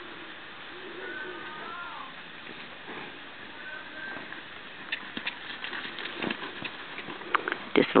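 Quiet outdoor ambience with a few faint bird chirps, then from about five seconds in a run of irregular soft knocks: an Arabian horse's hooves cantering on arena sand.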